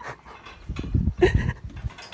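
Goat snuffling and breathing right against the microphone: a run of loud, low puffs in the second half, with one short, sharper sound among them.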